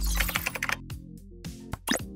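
Keyboard-typing sound effect: a quick run of key clicks in the first second, over intro music with a steady bass. A short upward sweep comes near the end.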